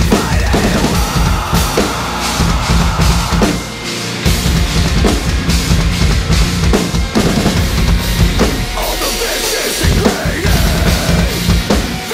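Acoustic drum kit played hard along with a recorded metalcore song: fast kick-drum, snare and cymbal hits over heavy distorted music. The low drums drop out briefly about four seconds in and again near the ten-second mark.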